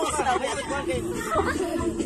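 Several people talking over one another in casual chatter.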